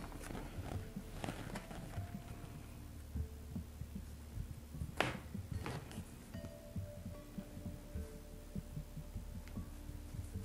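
Faint, irregular low thumps and a sharp click about five seconds in, from a needle and t-shirt yarn being worked on a wooden tabletop, over faint soft background music.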